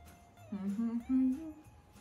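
A woman humming a tune with closed lips, starting about half a second in and stepping up through several short held notes, over faint background music with a steady beat.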